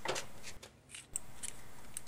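Faint clicks and rubbing from a small metal rod being handled, with a short break to near silence about half a second in.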